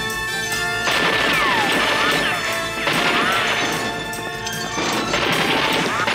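Rifle fire, a rapid string of shots smashing into a gate, with several falling whines heard over dramatic background music.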